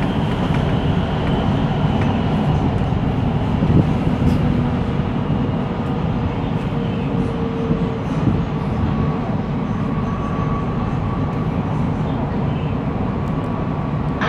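MRT train running through a tunnel, heard from inside the leading car: a steady low rumble of the train in motion, with a faint steady whine joining about halfway through.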